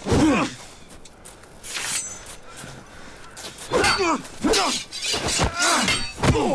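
Men grunting and crying out with effort in a sword fight, short falling cries at the start and a rapid string of them in the last two seconds. About two seconds in, one sharp metallic clash of swords with a brief high ring.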